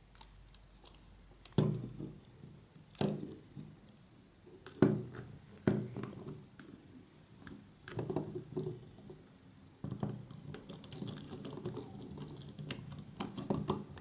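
Hand screwdriver driving M3 bolts through a 3D-printed plastic extruder body into a stepper motor: scattered light knocks and clicks of the tool and parts being handled, with a run of faster small clicks in the last few seconds.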